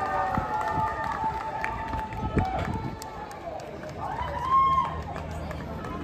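Outdoor street ambience: people's voices talking, with the regular short clicks of footsteps walking on pavement.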